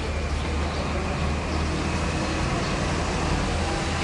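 Steady outdoor ambience with a heavy low rumble.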